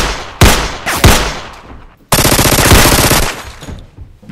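Gunshots from a handgun: three single shots within the first second, each ringing out and dying away. About two seconds in comes a rapid burst of automatic fire that lasts about a second.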